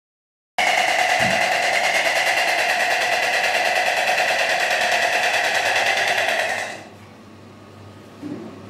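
White stork clattering its bill: a loud, fast, even rattle that sets in just after the start and stops about a second before the end, ringing in a small tiled room.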